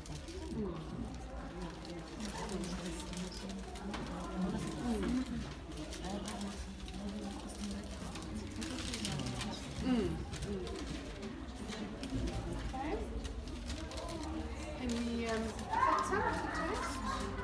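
Quiet, indistinct talking and murmuring with a steady low room hum.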